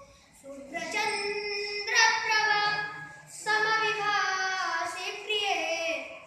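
A boy singing solo and unaccompanied, in three long phrases with sliding, held notes after a brief pause at the start.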